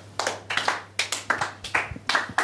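A few people clapping their hands, the claps coming quickly and unevenly rather than in time.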